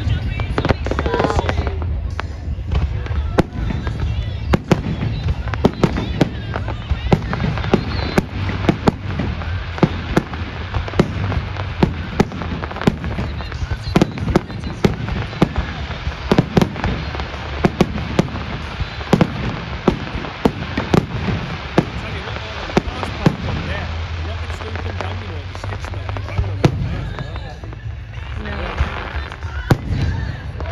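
Fireworks display: a rapid, irregular run of sharp bangs and crackles from bursting aerial shells over a steady low rumble. It is densest through the middle and thins out near the end.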